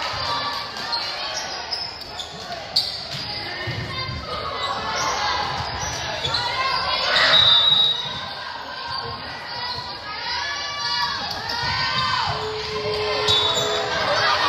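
Volleyball rally in a gymnasium: the ball smacking off players' hands and arms, with players and spectators shouting, the loudest shout about seven seconds in, all echoing in the large hall.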